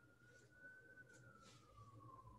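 Near silence: room tone, with one faint high tone that slowly rises and then falls away, and a few soft clicks.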